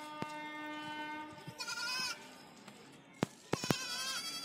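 Goat bleating twice: a quavering call about one and a half seconds in and another near the end, with a few sharp clicks just before the second.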